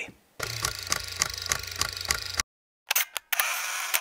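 Camera sound effects. A run of mechanical clicks, about four a second over a low hum, lasts for about two seconds. After a short silent gap come two sharp clicks and then about a second of hiss that cuts off abruptly.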